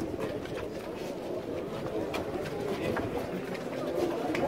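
Low, indistinct murmur of a crowd of men gathered close together, with a few faint clicks and shuffles.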